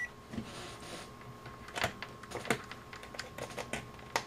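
The Kasuntest ZT102 multimeter's rotary function dial is turned by hand, and its detents click a few times, with two sharper clicks near the middle.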